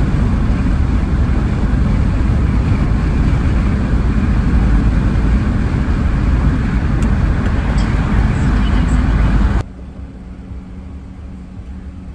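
Loud, steady wind and road noise inside a car moving at highway speed, heaviest in the low rumble. It cuts off suddenly about nine and a half seconds in, leaving a much quieter cabin hum.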